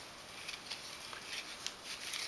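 Faint scraping and light taps of a flat stick stirring a wet sediment-and-water mix in a small plastic tub, working lumps into the water.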